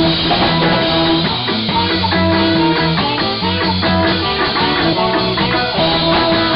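Ska band playing live: saxophone playing held notes over guitar and drums.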